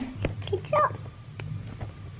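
A young child's two short, high-pitched vocal sounds, with sharp knocks and rustling from a phone camera being handled close by.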